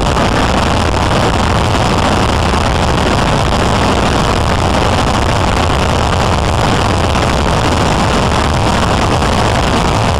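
Steady road and engine noise heard inside a police SUV's cabin at highway speed, a constant loud rumble and hiss with no sudden events.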